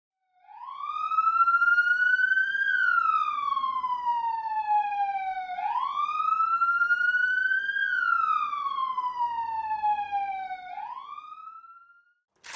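Police car siren wailing in two slow cycles, each rising then falling in pitch over about five seconds. It starts about half a second in, and a third rise begins near the end as it fades away.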